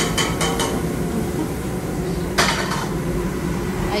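Restaurant clatter of dishes and utensils: a few quick clinks in the first second and a brief louder clatter about two and a half seconds in, over a steady low hum.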